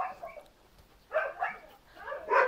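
A dog giving a few short, fairly quiet barks: one right at the start and two more a little over a second in.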